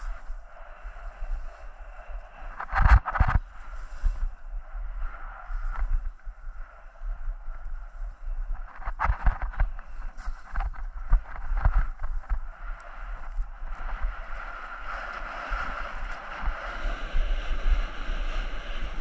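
Skis sliding and scraping over packed snow during a downhill run, with wind rumbling on the microphone. There are louder bursts of scraping about three seconds in and again between nine and twelve seconds, and the snow noise grows towards the end.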